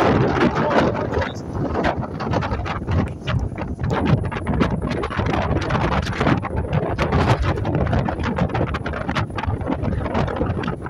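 Wind buffeting the microphone in irregular gusts on the open deck of a catamaran ferry under way, over a steady low rumble from the ferry's running.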